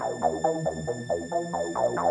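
Instrumental electronic synthesizer music: a fast, even run of short synth notes, about five a second, over a low bass line that steps between notes.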